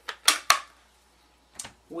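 Two sharp taps about a quarter second apart, then a fainter click near the end: card and paper being handled on a craft mat.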